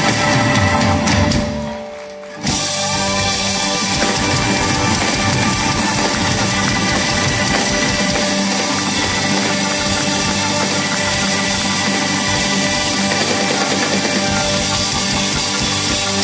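Live band playing an instrumental passage with electric bass, drum kit and percussion. About a second and a half in, the music drops away briefly. The full band then comes back in suddenly and plays on steadily.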